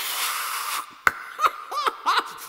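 A man's vocal sound effects: a breathy hiss lasting nearly a second, then a sharp click and a few short high chuckles in a character voice.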